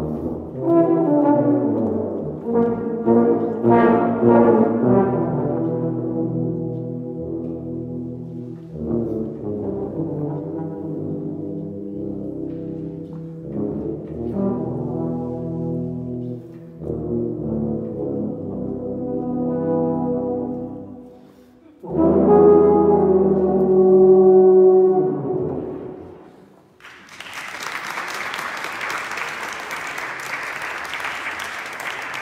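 Low brass ensemble of euphoniums and tubas playing, breaking off briefly and then sounding a loud held final chord that dies away. Audience applause starts a few seconds before the end.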